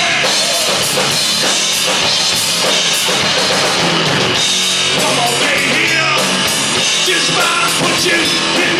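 Live rock band playing loud: electric guitar, bass guitar and a drum kit.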